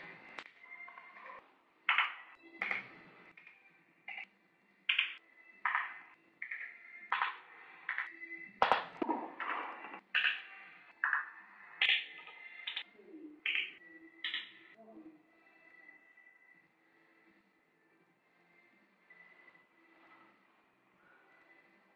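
Short, forceful exhaled breaths, irregularly about once a second, from a person working through an ab exercise; they stop about fifteen seconds in, leaving a faint steady tone.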